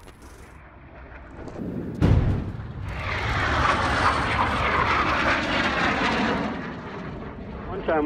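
Small aircraft's engine noise swelling from faint to loud, with a sudden low thud about two seconds in, then a steady loud drone that eases off near the end.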